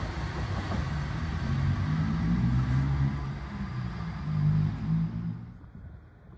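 Sydney Trains electric double-deck train moving away, a low rumble with a motor hum that fades out about five seconds in.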